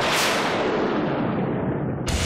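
A dramatic sound-effect hit, a sudden loud boom-like burst that dies away over about two seconds, the high end fading first.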